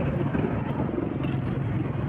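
Steady street traffic noise, a continuous even rush with no distinct strikes or voices.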